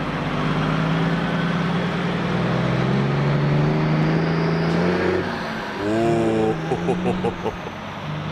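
Diesel engine of a city bus driving past at low speed. Its note rises gradually as it pulls along, then falls away about five seconds in, with voices near the end.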